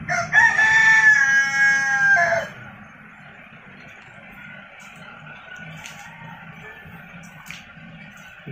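A rooster crowing once: a single held call of about two seconds near the start, followed by faint background noise.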